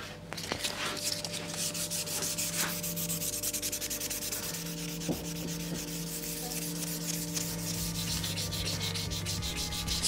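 Hand sanding of a wooden guitar neck: abrasive rubbed along the wood in quick, even back-and-forth strokes, with a steady low hum underneath.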